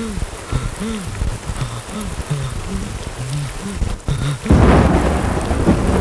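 Heavy rain pouring steadily while a man lets out short, repeated wailing cries. Near the end a loud thunderclap breaks in suddenly and rumbles on over the rain, the loudest sound here.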